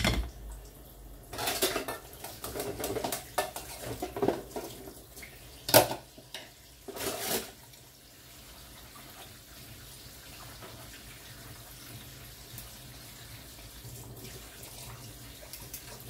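Dishes being washed by hand at a sink: plates and cutlery clinking and clattering with water, several knocks in the first half and the loudest clink about six seconds in, then quieter.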